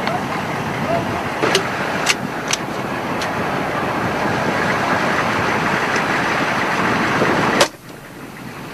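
Single rifle shots cracking out over the steady running noise of a Humvee. There are four irregularly spaced shots in the first few seconds and a louder one near the end, after which the background noise drops away suddenly.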